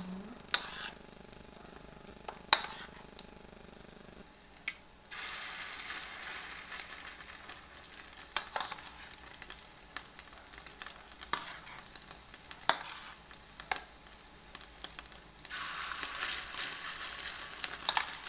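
Oil sizzling in a frying pan as pieces of fish coated in beaten egg are spooned in, the sizzle swelling about five seconds in and louder again near the end. A metal spoon clinks sharply against the bowl and pan several times.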